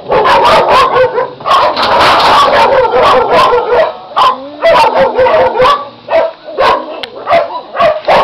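Dogs barking loudly and repeatedly in quick, overlapping barks, starting suddenly and going on with only short pauses.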